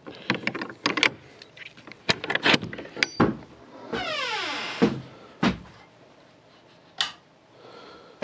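A metal latch on a wooden shed door clicking and rattling as it is worked open. The door then creaks on its hinges, the creak falling in pitch over about a second, followed by a thud and one sharp knock.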